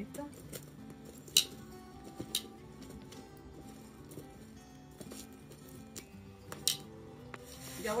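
Metal tongs clinking three times as poblano chiles are turned over on charcoal embers, the first clink the loudest, about a second and a half in. Background music plays throughout.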